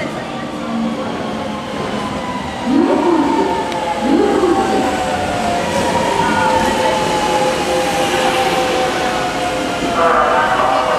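Kobe Municipal Subway 1000 series train arriving at a platform and braking: its traction motors whine in several tones that fall slowly in pitch as it slows, over rumbling wheels, growing louder as the cars pass close by. About three and four seconds in come two short low sounds that rise and fall in pitch.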